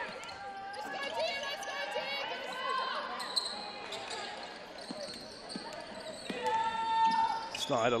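A basketball being dribbled on a hardwood court, with voices echoing in the hall.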